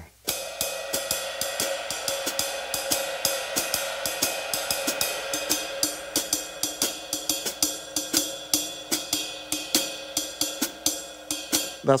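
Cascara pattern played with a drumstick on a drum-kit cymbal: an uneven, repeating Latin rhythm of strokes over the cymbal's sustained ring. The strokes start just after the opening and stop just before the end.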